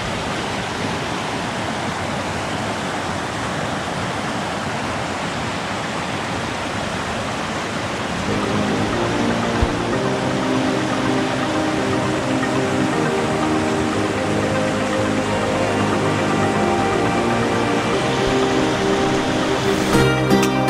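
Steady rush of river rapids and small waterfalls. About eight seconds in, soft background music comes in and carries on over the water.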